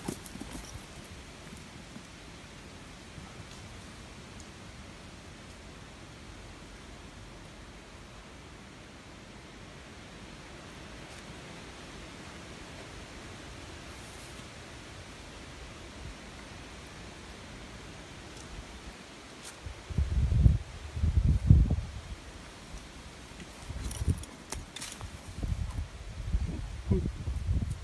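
Faint steady outdoor hiss, then, from about twenty seconds in, loud irregular low rumbling buffets on the microphone.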